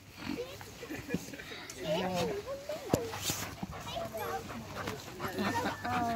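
Young dogs making short vocal sounds while play-fighting, over people's background chatter, with a single sharp tap about three seconds in.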